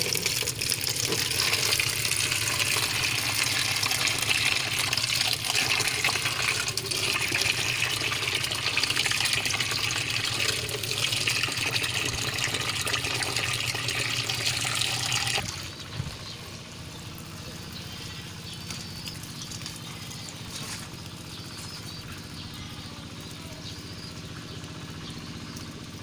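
Tap water running in a steady stream into a plastic bucket and splashing as the bucket fills. About fifteen seconds in, the running cuts off suddenly, leaving a much quieter background.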